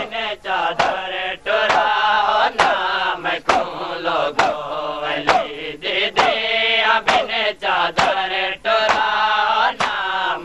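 A group of men chanting a noha in unison, with the slaps of their hands on bare chests (matam) landing together about once a second as a steady beat.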